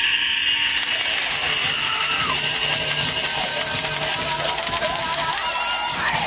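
Rapid, steady clicking of toy guns being fired at a costumed zombie, over long held shouts and music.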